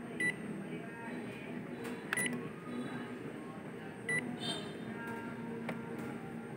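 Ricoh MP copier's touch-screen control panel beeping as keys are pressed: three short high beeps about two seconds apart, over a steady low background.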